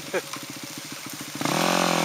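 Dirt bike engine running at low revs with an even, pulsing beat. About one and a half seconds in, a drawn-out human "aah" comes in over it.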